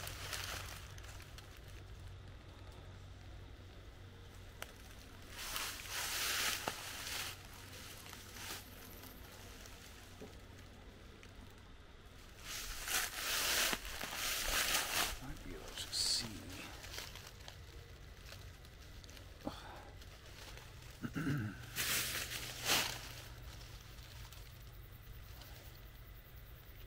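Dry leaves and brush rustling in several bursts a few seconds apart, as someone moves through undergrowth, over a steady low background hum.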